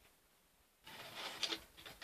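Faint rustling and rubbing of hands handling small objects, starting about a second in, with a soft tap about halfway through.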